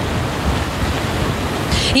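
Wind buffeting an outdoor microphone: a steady rushing noise with a fluctuating low rumble.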